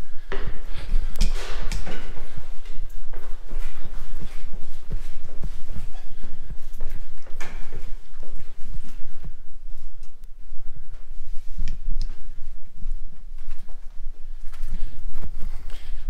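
A person's footsteps, repeated steady steps climbing stone stairs and then walking along a corridor, over a low rumble of a hand-held camera being carried.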